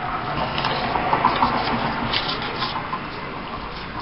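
Paper and cardstock rustling and sliding as a tag is handled and pressed on a tabletop.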